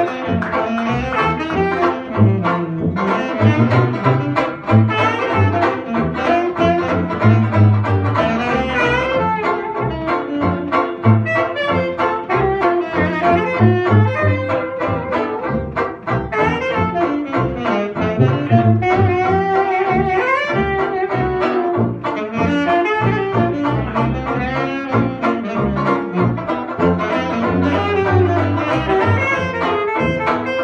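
Small traditional jazz band playing an instrumental chorus: saxophones and trumpet carry the tune over a steadily strummed banjo and tuba bass.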